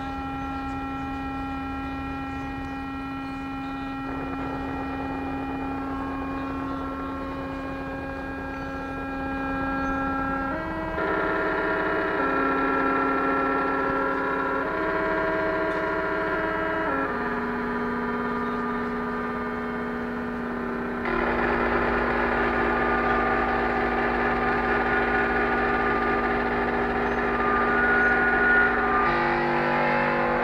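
Live electronic music of synthesizer and electronically processed bass drones: layered tones held for several seconds, shifting to new chords every four to six seconds. About two-thirds through, a deep low tone enters and the sound grows fuller and louder.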